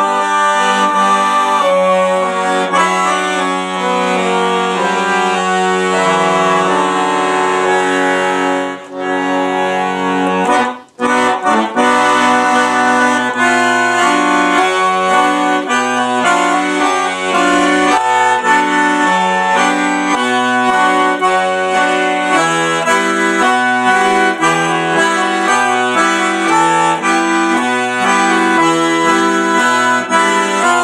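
Monterey piano accordion playing an instrumental passage solo: held chords for about ten seconds, a short break about eleven seconds in, then a steady alternating bass-and-chord rhythm with a melody on top.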